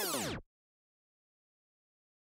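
The end of a sped-up, pitch-shifted audio effect laid over fast-forwarded footage, its pitch sliding down before it cuts off suddenly about half a second in. Then dead digital silence.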